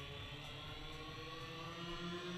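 Faint, steady background ambience of an outdoor stadium, with a few thin steady hum tones under it.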